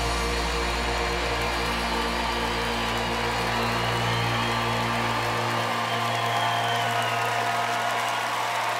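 A live rock band holds its final chord and lets it ring, with audience applause and cheering underneath. The deepest bass note cuts off about five seconds in while the higher notes keep sounding.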